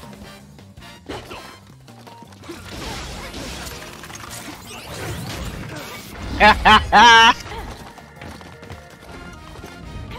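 Audio of a Japanese tokusatsu TV episode: background music and action sound effects, with a loud shouting voice in three short bursts about six and a half seconds in.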